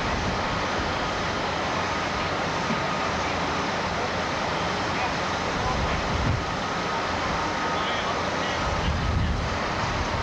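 Steady noise of heavy machinery and diesel engines working across a demolition site, with a few faint steady whines and indistinct voices in the mix.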